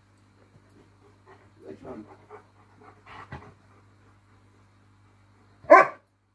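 A dog makes a few faint, short vocal sounds, then gives one short, loud bark near the end.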